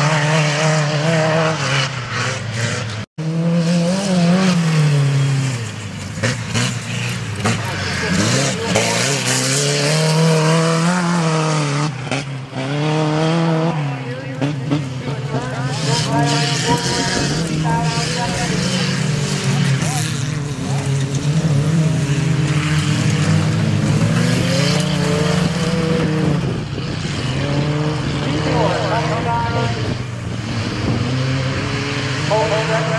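Small pickup-truck race engines revving hard, their pitch rising and falling over and over as the trucks accelerate and slow around a dirt track. The sound cuts out for a moment about three seconds in.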